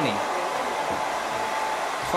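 A hair dryer running steadily: an even rush of air with a faint steady whine.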